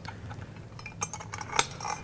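Small metal clinks and ticks of 1/4-20 screws being handled and fitted by hand into the metal cover of a drive module, with a couple of sharper clicks about a second in and again half a second later.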